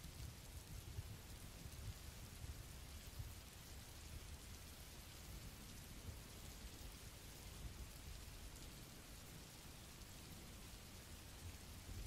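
Faint, steady rain sound effect: an even hiss of rainfall with no distinct drops or events.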